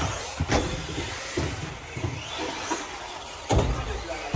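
Tamiya TT-02 radio-controlled touring car's electric drivetrain whining, rising and falling in pitch as it speeds up and slows on a carpet track. A couple of sharp knocks come about half a second in and again near the end.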